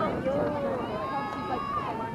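Indistinct conversation between people, with no clear words.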